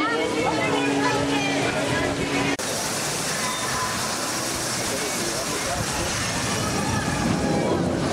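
Crowd chatter with a steady hum over it, cut off abruptly about two and a half seconds in. It gives way to an even rushing noise of water at a flume ride's splashdown lagoon.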